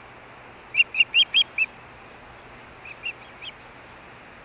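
Osprey calling at close range: a quick run of five short, sharp whistled chirps, then three or four fainter ones a little over a second later.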